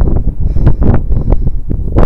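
Wind buffeting the camera's microphone in loud, uneven gusts, a deep rumble that rises and falls.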